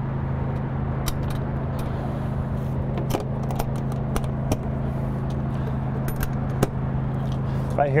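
A steady, low mechanical hum holding one pitch throughout, with a few sharp clicks along the way.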